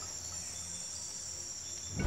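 A steady, high-pitched, insect-like trill, like crickets, over a faint low hum. It stops at the very end.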